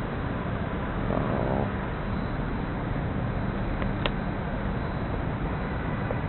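Steady outdoor city background noise with distant traffic. A faint voice can be heard about a second in, and a single sharp click about four seconds in.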